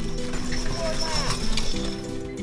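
Hoofbeats of a two-mule team trotting in harness while pulling a light racing chariot, under background music.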